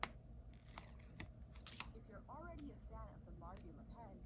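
Quiet paper handling of a sticker sheet: a few light clicks and short rustles as a small sticker is peeled off and picked up. Faint short chirping tones sound in the background in the second half.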